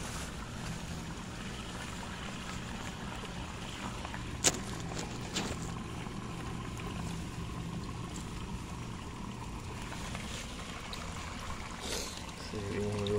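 Steady rain noise with a low hum underneath, and a single sharp click about four and a half seconds in.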